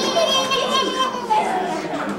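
Several children's voices chattering and calling out at once, overlapping.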